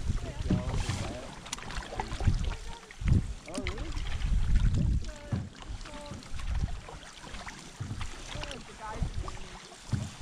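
Canoeists' voices talking across the water in short, unclear snatches, over low rumbling surges of wind and water against a microphone at the waterline, strongest in the middle of the stretch.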